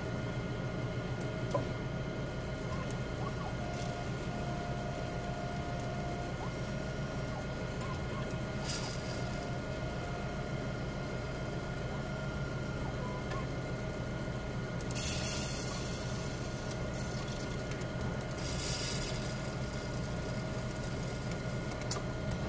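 Siemens Sysmex CS-2500 coagulation analyzer powered on and idle, its internal fans and pumps humming steadily with a few faint whining tones. Brief hisses come about nine seconds in, around fifteen seconds and near the end, with a few light clicks.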